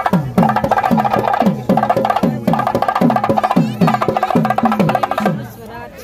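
Temple band music: a saxophone plays a melody of held notes over a steady drum beat of about three strokes a second, stopping about five seconds in.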